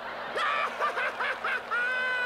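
Cartoon mouse giggling in a high-pitched voice: a run of short quick laughs, then one long drawn-out laugh near the end.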